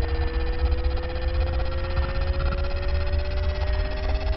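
Outro sound-design drone: a steady low rumble under two held tones, the higher one slowly rising in pitch.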